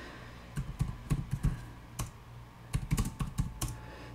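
Keys clicking on a computer keyboard as terminal commands are typed, in two short runs of keystrokes with a gap near the middle broken by a single click.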